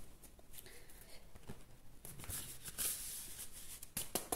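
Faint, irregular rustling and soft flicks of a large oracle card deck being shuffled by hand, loudest about a second in and again near three seconds.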